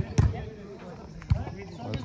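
A volleyball being hit: two sharp smacks about a second apart, over people talking.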